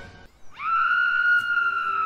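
A single high held note, sliding up into it about half a second in and holding steady for about a second and a half.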